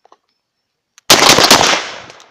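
Two shotgun shots about half a second apart, fired at a passing flock of wood pigeons, the second shot's report trailing off in an echo.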